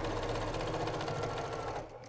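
Domestic sewing machine stitching a seam through layered fabric squares at a steady, fast speed, stopping just before the end.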